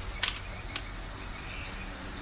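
Two short, sharp clicks about half a second apart, over a low steady outdoor background.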